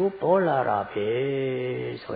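A monk's voice intoning a phrase in a chanting delivery, the second half drawn out on one long, steady held note.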